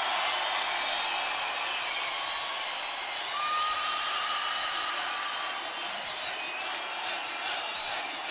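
Large rock-concert crowd cheering and shouting at the end of a song, with the band's music stopped.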